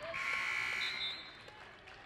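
Basketball scoreboard buzzer sounding once for about a second and then cutting off: the signal for a substitution.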